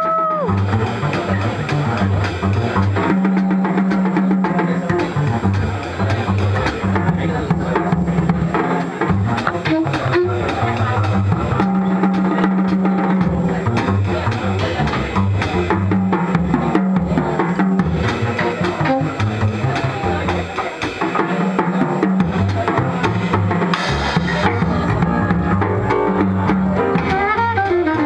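Live small-group swing jazz: double bass and drum kit playing together, with a saxophone coming in near the end.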